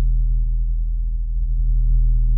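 A loud, steady low electronic hum: one deep tone with a stack of overtones, held without change.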